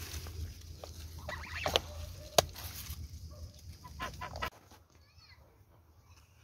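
A few short bird calls over a low steady rumble, with a sharp click about two and a half seconds in. The rumble stops abruptly about three-quarters of the way through, leaving only faint sound.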